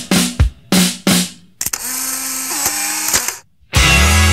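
Rock band recording playing a break: a few short stabbed chords with gaps between them, then a stretch of rattling noise over a held low tone, a brief silence, and the full band coming back in just before the end.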